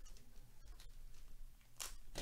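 Trading-card pack wrapper being handled and torn open by gloved hands: faint crinkles and clicks, then one brief, louder rip near the end.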